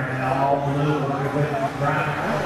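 A man's voice, drawn out and unintelligible, held on a slowly wavering pitch.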